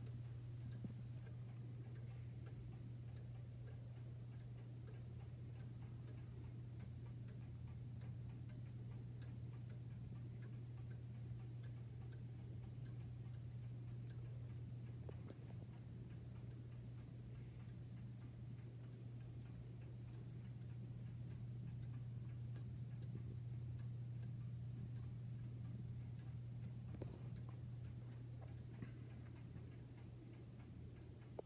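Antique German pendulum wall clock ticking steadily over a steady low hum.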